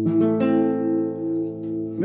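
Nylon-string classical guitar strummed twice to close a waltz, the final chord then left ringing and slowly dying away.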